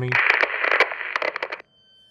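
A burst of crackling, hissy noise with irregular clicks, lacking any low bass, which cuts off suddenly near the end.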